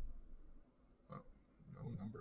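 Mostly quiet, with a man's brief low mumbled voice sounds: a short one about a second in and a longer one near the end.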